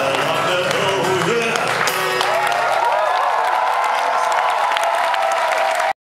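Live audience applauding and cheering at the end of a song, while the last chord on the acoustic guitar rings out and fades over the first couple of seconds. A few voices call out in the crowd, and the recording cuts off abruptly at the very end.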